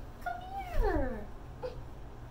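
A toddler whining on being woken: one drawn-out cry, starting about a quarter second in, that slides steeply down in pitch, followed by a short little sound a moment later.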